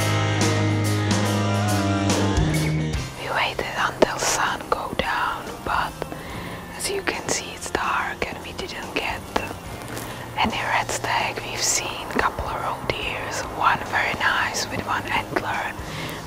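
Rock music with guitar for about the first three seconds, then a woman whispering.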